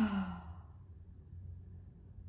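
A woman's loud, open-mouthed 'ahh' sigh, falling in pitch and fading out about half a second in, as she lets out a full breath to release tension; then only faint room hum.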